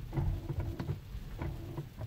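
Tesla Model 3 creeping forward in deep snow with traction control on: low rumble and scattered crunching clicks from the tyres and body, with a faint hum from the electric drive that comes and goes as traction control holds back wheel spin.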